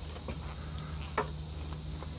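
Steady chorus of crickets with light clicks and rustles from stranded copper wire ends being twisted together by hand, over a low steady hum.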